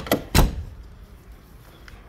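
Door of a Fiat Uno Mille being worked: the handle latch clicks twice, then the door shuts with one heavy thump about half a second in.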